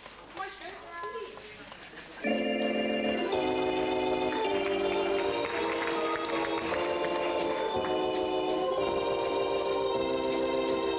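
Faint voices, then about two seconds in organ music starts suddenly with steady held chords that change about once a second.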